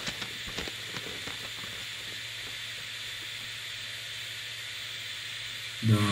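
A folded paper instruction sheet being unfolded, giving a few faint crackles in the first second or so, over a steady hiss.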